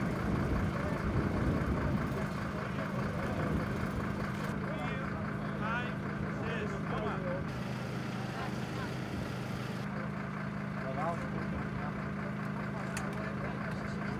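An engine running steadily, a low even drone, with faint voices about halfway through.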